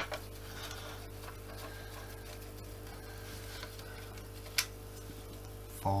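A long screwdriver turning a screw out of the plastic chassis of a Dyson DC25 vacuum cleaner: faint small ticks and scrapes, with one sharp click about four and a half seconds in, over a steady low hum.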